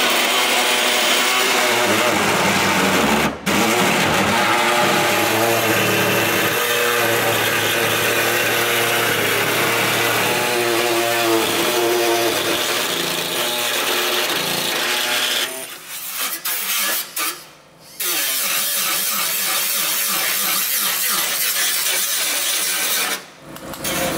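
A handheld power tool grinding and trimming the steel edge of a newly welded flared rear wheel arch on a Toyota AE86. It runs loud and steady, stopping briefly about three seconds in, pausing for a couple of seconds past the middle, and stopping again just before the end.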